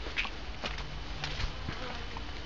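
Faint footsteps on a dirt path with light rustling and a few soft clicks, over a low steady rumble.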